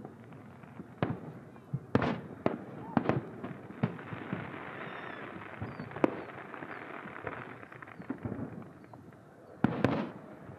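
Fireworks shells bursting in a string of sharp bangs, irregularly spaced, with a loud double bang near the end.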